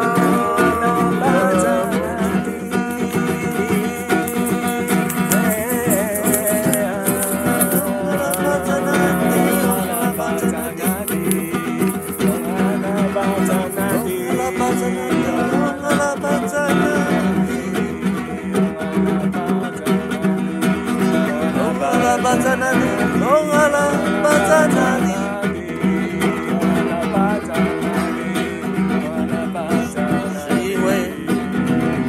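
Music: plucked guitar playing continuously, with a wavering melody line above it.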